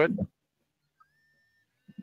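A man's voice finishes a word, then near silence. About a second in there is a faint, brief, steady high tone.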